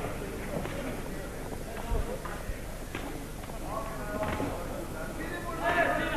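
Gloved punches and boxers' footwork knocking and thumping on the ring canvas, with one heavy low thump about two seconds in, over the steady murmur of an arena crowd.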